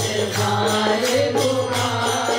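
Devotional kirtan music: a harmonium playing a melody over a steady low drone, with light percussion keeping a steady beat.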